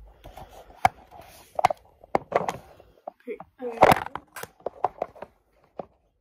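A scattered series of sharp clicks and knocks, like things being handled and set down in a kitchen, with the loudest cluster just before four seconds in.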